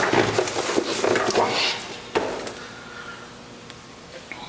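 Cardboard box and packing rustling and scraping as an air compressor is lifted out by hand, then a single sharp knock a little after two seconds in, with quieter handling after it.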